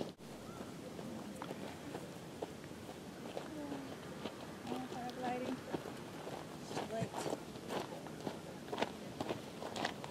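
Quiet voices talking, with a run of light clicks and taps like footsteps in the second half.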